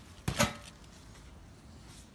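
A single brief rustling knock a little under half a second in, from the leaf-lined wicker harvest basket being handled close to the microphone. After it only faint background remains.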